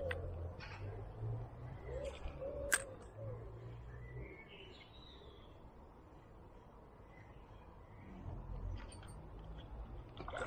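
A bird cooing softly in the first few seconds over a low rumble, with two sharp clicks about two and three seconds in; a faint higher bird call follows about halfway through.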